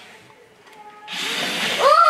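Small electric gear motor of a remote-control toy centipede whirring steadily as it crawls, starting about a second in. A child laughs near the end.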